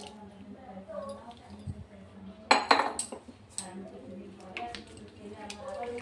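Kitchen utensils knocking and clinking against a frying pan, with a cluster of sharp knocks about two and a half to three and a half seconds in and lighter knocks after.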